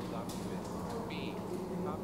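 Steady low buzzing hum, with faint speech under it.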